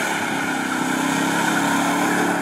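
Pickup truck's V8 held at steady high revs during a burnout, the rear tyre spinning and hissing against the pavement.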